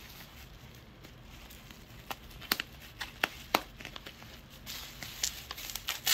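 Scissors cutting into a bubble-wrap package. About two seconds in come a handful of sharp snips and plastic clicks, and near the end the plastic crinkles and rustles as it is handled.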